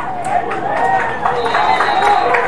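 Spectators yelling and cheering during a running play, many voices overlapping. A faint, high, steady whistle tone joins in about halfway through.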